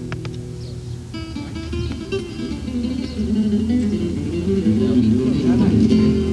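Guitar music: a melody of plucked notes, fuller in the second half.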